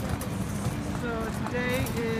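Busy sidewalk ambience: a passer-by's voice in the second half, over scattered clicking footsteps and a low street rumble.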